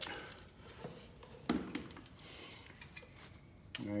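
Small steel hardware clinking: a few quick clicks, then a louder knock about a second and a half in with a short high metallic ring, like a washer striking and settling. A brief scuff follows.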